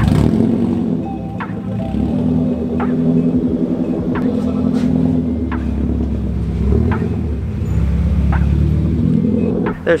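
Car engine running with a steady low rumble, with a faint regular beat of background music over it.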